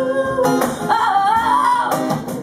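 Live acoustic band music: an acoustic guitar strummed under a voice holding long, wavering notes without words.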